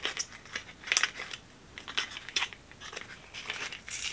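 A small cardboard product box being pulled open by hand and the liner pencil worked out of its packaging: irregular crinkles and crackles of paper packaging, several over a few seconds.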